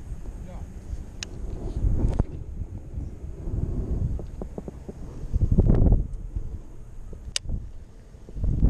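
Wind buffeting the microphone in uneven low gusts, loudest shortly before the end, with two sharp clicks, one about a second in and one near the end.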